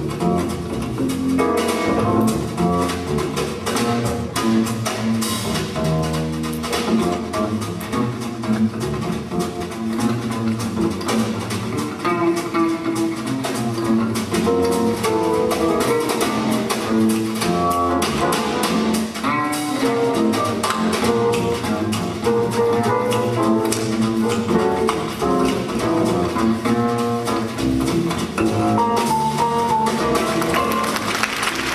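Live small-group jazz playing a blues, with the double bass prominent over drums.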